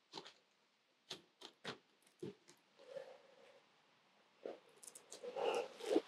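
Faint, scattered clicks and taps of keys and a lock being worked at the latch of a hard-shell rooftop tent, with a slightly louder cluster of handling noise near the end.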